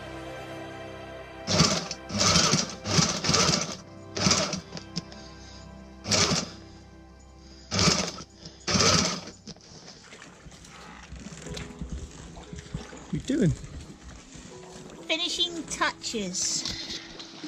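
A Sailrite sewing machine running in about seven short bursts, each under a second, stitching clear vinyl window material over background music.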